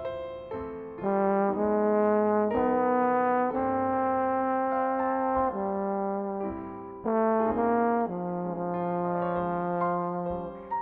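Trombone playing a slow jazz ballad melody in long, held notes over soft piano accompaniment. A phrase fades near the middle and a new one begins about seven seconds in.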